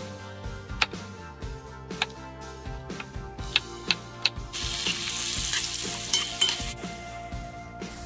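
A kitchen knife cuts pattypan squash on a wooden cutting board, several sharp knocks of the blade on the board. About halfway through, a loud sizzle starts suddenly as vegetables fry in a hot pot, then fades to a softer sizzle near the end.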